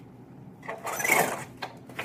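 A pull-down projection screen being drawn down: a whirring, sliding rush of about a second from its roller, followed by a couple of short clicks.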